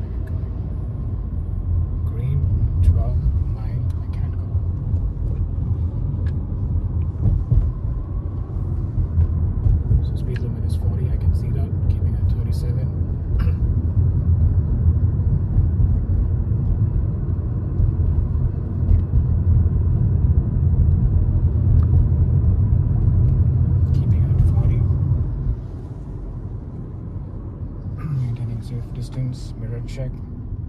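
Steady low rumble of road and engine noise heard inside the cabin of a Honda Civic driving along a city street. The rumble drops sharply about 25 seconds in.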